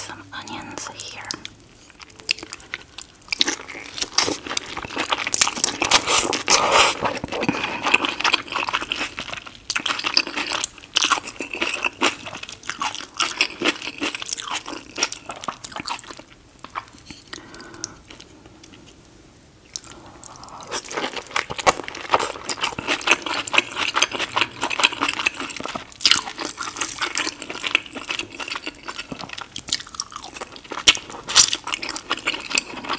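Close-miked chewing and wet mouth clicks of someone eating sauce-covered seafood boil, king crab and shrimp. The sounds are dense and irregular and ease off for a few seconds about two-thirds of the way through.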